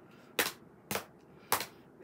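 Three sharp clacks, about half a second apart: a children's board book with a plastic sound panel and a handheld device in a plastic case being knocked together in a mock fight.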